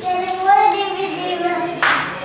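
A child's voice holding a drawn-out, sung note that rises slightly and then falls back, followed near the end by a short, sharp hissing noise.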